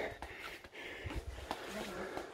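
Quiet room tone with faint background voices and a few light ticks.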